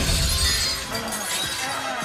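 Glass breaking in a crash: one sudden heavy hit, then a clatter of shards that fades over about a second, with music underneath.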